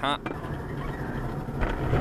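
Car engine and road noise recorded from inside the cabin by a dashcam: a steady low rumble as the car is driven hard along the street.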